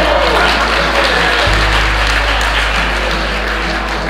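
Audience applauding, a dense even clatter of clapping, over a background music track with sustained low notes.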